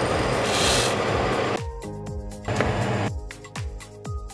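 Background music with a steady beat. Over the first second and a half, a loud hiss of dry rice grains being poured into a pot of boiling water, then a shorter, fainter rustle about two and a half seconds in.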